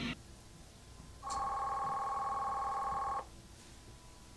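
A single steady electronic tone, like a telephone ring or beep, lasting about two seconds. It starts about a second in and cuts off suddenly, with faint hiss around it.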